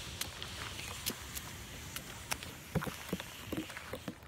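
Snow and ice crunching and crackling as a gloved hand pushes a ridge of it along a metal handrail, in scattered small crackles over a steady hiss.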